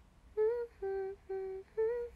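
A woman humming a simple tune with her lips closed: four separate held notes beginning about half a second in, the middle two lower than the first and last.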